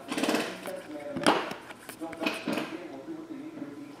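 Foil wrapper of a trading-card pack crinkling and tearing as it is ripped open by hand, in three short bursts, with the cards inside being slid apart.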